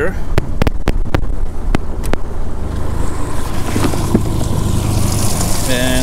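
Livewell aerator pump on a bass boat switched on. After a few sharp clicks, a steady pump hum and a hiss of water spraying into the livewell build up from about three seconds in.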